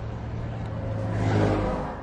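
Car engine and road noise heard from inside the cabin of a moving car, a steady low drone that swells about a second and a half in and then falls away.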